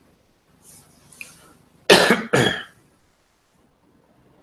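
A person coughing twice in quick succession, the first cough slightly louder, just after a faint breath.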